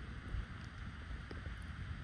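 Faint outdoor background: a low wind rumble on the microphone under an even light hiss, with a few tiny ticks.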